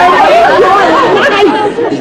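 Several women's voices exclaiming and chattering over one another, high-pitched and excited.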